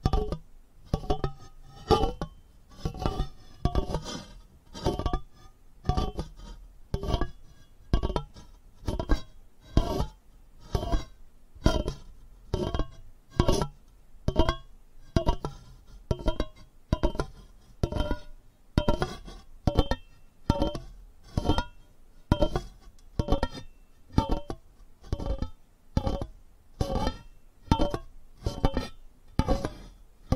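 Steady rhythmic tapping on a hard, resonant object, a little under two taps a second, each tap leaving a short pitched ring.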